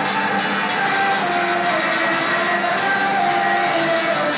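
Live electric blues on electric guitar and harmonica: long held notes that bend in pitch, over a steady tapping beat.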